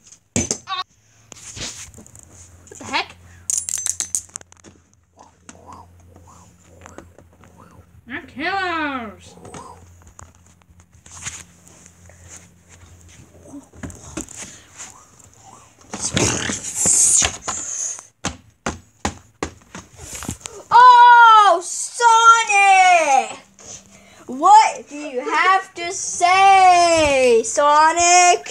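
A child's high-pitched wordless vocalising: one sliding squeal about eight seconds in, then a run of loud sing-song calls in the last five seconds. A cluster of knocks and clatter comes shortly before the calls.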